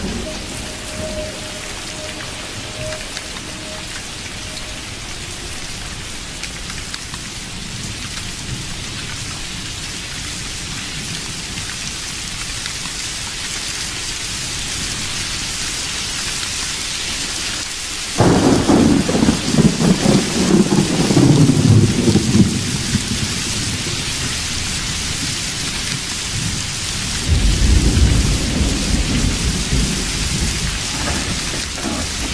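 Steady rain with thunder: a loud rumble of thunder breaks in suddenly about two-thirds of the way through and rolls for several seconds, and a second, shorter rumble comes near the end.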